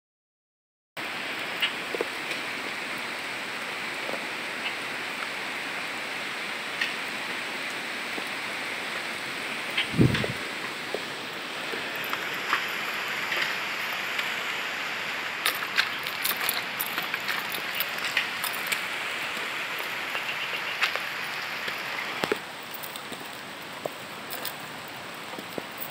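Steady hiss of rain falling on vegetation, starting after a second of silence. A loud low thump about ten seconds in and scattered light clicks and knocks come from the phone being handled while walking.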